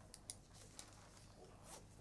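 Faint scratching of a pen writing on paper: a few short strokes, over a low steady hum.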